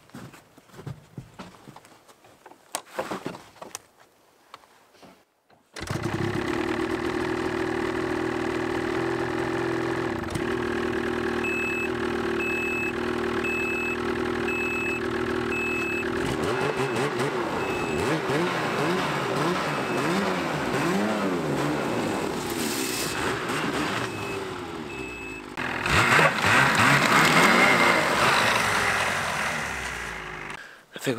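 Ski-Doo Backcountry X snowmobile's 850 E-TEC two-stroke twin starting suddenly about six seconds in, after a few faint knocks, and running at idle. A string of short, evenly spaced beeps sounds over it, and the engine note then wavers up and down before getting much louder near the end under throttle.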